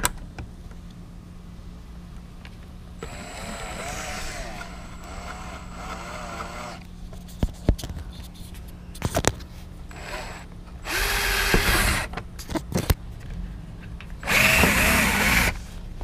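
Cordless drill boring new holes through a car's front bumper. A long, unsteady run with the motor's pitch wavering under load comes a few seconds in, then a few sharp clicks, then two shorter, louder runs near the middle and end.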